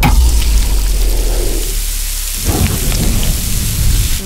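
Whole herb-stuffed fish and corn sizzling on a hot gas grill over open flames, a steady crackling hiss, with a deep low rumble under it for roughly the first two and a half seconds.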